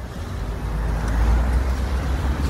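A road vehicle going by close to the phone: a rumble of engine and tyre noise that swells over the first second and then holds, with wind rumbling on the microphone.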